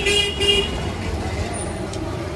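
Two short vehicle horn toots, then steady road-traffic noise.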